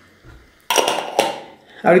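Two light knocks against a stainless steel cooking pot about half a second apart, each ringing briefly.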